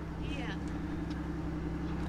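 Steady low hum of a car engine idling, most likely the Pontiac Aztek's.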